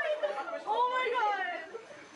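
Indistinct voices of several people chattering, fading down toward the end.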